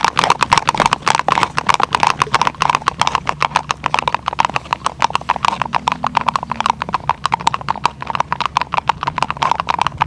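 Hooves of two Icelandic horses tölting on ice: a quick, even run of sharp clicks that grows a little fainter in the second half.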